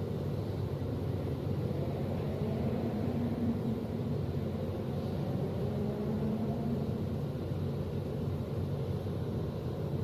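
A steady low rumble with a faint hum in it.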